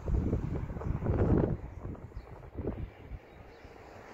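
Wind buffeting the microphone in gusts, loudest in the first second and a half, then easing to a softer rumble.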